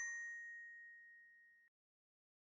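Ringing tail of a single bell-like ding sound effect from an animated logo outro, a clear chime tone fading out over about a second and a half.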